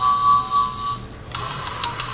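Cubicle doorbell playing its electronic sound effects: a held, steady electronic tone that stops about a second in, then a different buzzing electronic effect that sounds like space.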